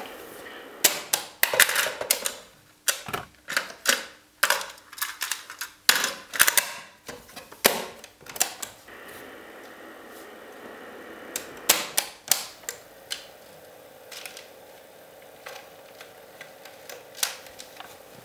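Piano-key transport buttons of a 1974 Sony TC-61 cassette recorder clacking as they are pressed and released, many sharp clicks in quick, irregular succession during the first half. From about nine seconds in, a faint steady hum as the tape transport runs, broken by a few more clicks.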